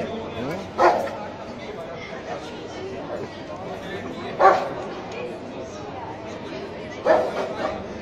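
A police dog barking, three single sharp barks spaced about three seconds apart, over the murmur of people talking.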